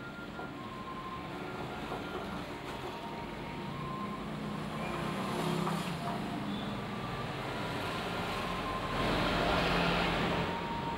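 Steady road-traffic noise with a low hum, growing louder toward the end as a vehicle comes closer.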